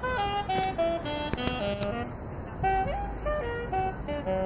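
A street musician's instrument playing a melody in quick runs of single notes, with a low rumble joining underneath a little past halfway.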